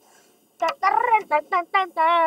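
A child's voice speaking in quick short syllables, starting about half a second in after a brief silence.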